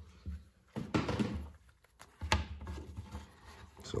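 Handling noises on a wooden workbench: a few short knocks and rustles as a piece of wet leather is laid down and a pocket knife is picked up. The loudest knocks come about a second in and again a little after two seconds.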